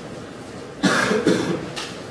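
A person coughing: three quick coughs, starting about a second in.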